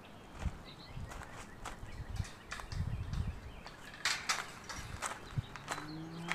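Footsteps on gravel, a step about every half second with some gaps.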